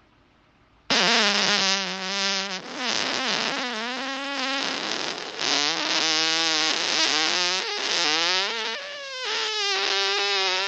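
A long run of human farts, starting abruptly about a second in and running on, one into the next, with a buzzing, pitched tone that wavers and slides between stretches.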